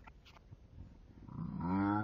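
A person's voice, speed-altered and drawn out into a low sound that holds a steady pitch. It comes in about one and a half seconds in, after a quiet start.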